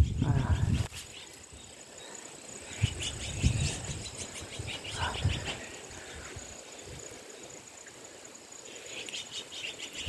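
Quiet outdoor ambience with faint, rapid high chirping in the background, in short runs a few seconds in and again near the end, broken by a few soft thumps.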